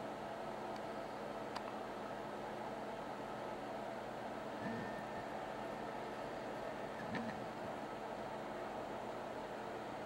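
Steady low electrical hum with hiss, with two soft bumps about five and seven seconds in.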